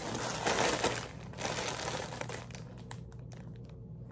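Clear plastic garment bags holding clothes crinkling as they are handled and picked up, most active in the first two seconds and dying down after.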